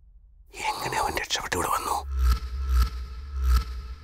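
A man's voice delivers a short line of film dialogue. About two seconds in, background score starts: a pulsing bass beat with a held high tone and regular high ticks.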